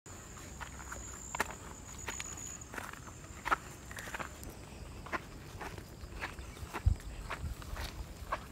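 Footsteps of a person walking on rough ground outdoors, irregular steps about two a second, with one heavier low thump about seven seconds in.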